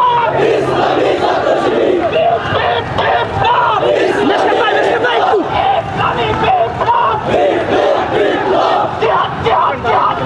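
A large crowd of marching protesters shouting slogans together, many voices overlapping in a loud, unbroken roar.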